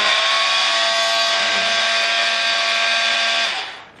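Handheld oscillating saw (oscillating multi-tool) running with no load, a steady buzz. Near the end it cuts out and winds down.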